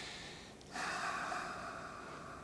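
A man's long, audible breath, with no voice in it. It starts about three-quarters of a second in and fades away over about a second.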